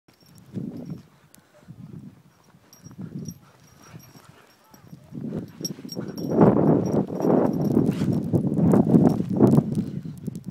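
Dogs running in snow: muffled paw-falls and scuffling, at first a few separate bursts, then a dense, rapid patter from about five seconds in.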